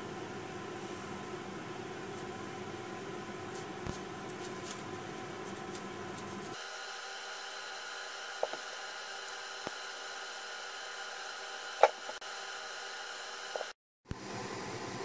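Faint steady hum of room tone, with a few light clicks and one sharper tap near the end from a small knife coring tomatoes over a bowl.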